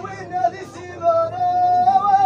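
A man singing in a high, strained voice: a short phrase, then a long held note starting about a second in.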